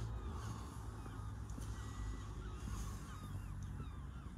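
Birds calling in the distance, many short faint calls, over a steady low rumble of wind on the microphone.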